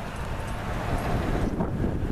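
Wind buffeting the camera's microphone: a steady rushing noise, heaviest in the low end, with an uneven, flickering level.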